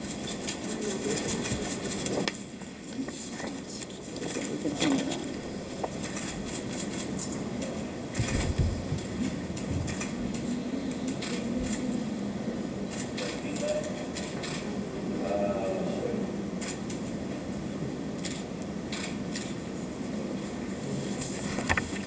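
Low background chatter of a roomful of people, with many scattered sharp clicks of press camera shutters.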